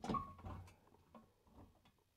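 Faint metallic knock with a brief squeak from a solar tracker's loose pivot joint as the frame is rocked by hand, followed by a few light ticks. The clicking is the sign of play at the pivot point, where the pin moves in its hole.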